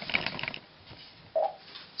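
NAO humanoid robot's joint motors buzzing and clicking for about half a second as its arms shift, followed by a short hum about a second and a half in.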